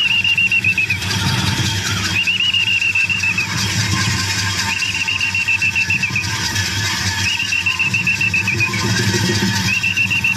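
A high, wavering metal squeal from the central post's pivot as the harnessed bull drags the rod around it. The squeal lasts about a second and repeats roughly every two and a half seconds, once per lap, over a low steady rumble.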